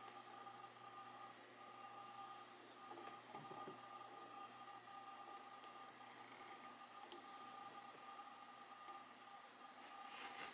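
Near silence: faint room tone with two faint steady tones throughout.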